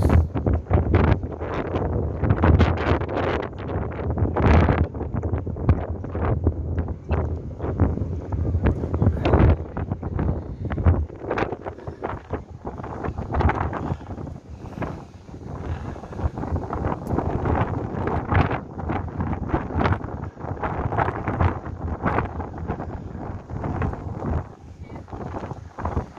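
Wind buffeting the microphone in uneven gusts on the open deck of a moving ferry.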